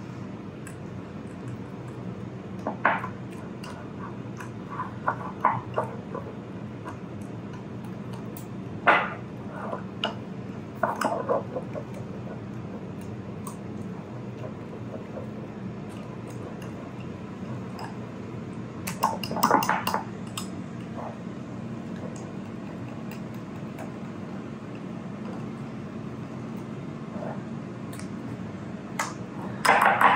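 Wire whisk stirring thick waffle batter in a glass bowl, with scattered clinks and taps of the metal whisk against the glass, a few louder ones in clusters. A steady low hum runs underneath.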